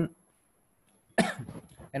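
A man coughs once about a second in: a sudden harsh burst that trails off within about half a second.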